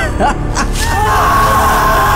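Dramatic film-trailer music over a low rumble. It opens with a short, wavering vocal cry, and from about a second in a long high note is held.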